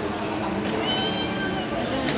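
Indistinct voices of players in an echoing indoor badminton hall, with a short high squeak, like a sneaker sliding on the court floor, about half a second in.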